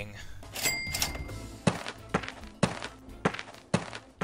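A run of evenly spaced dull thuds, about two a second, starting a little under halfway in: a footstep sound effect of someone walking. They follow a short, sharp, high sound about half a second in.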